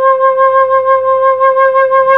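Soprano recorder sounding its lowest note, low C (Do 5), with all holes covered. It is one long, steady, held tone with a slight waver in loudness.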